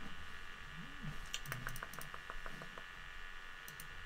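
Light typing on a computer keyboard: a short run of quick keystrokes in the middle, about seven a second, with a few sharper clicks, over a low steady hum.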